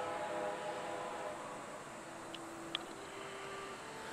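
Faint held tones at a few pitches that change several times, with two small clicks a little past the middle.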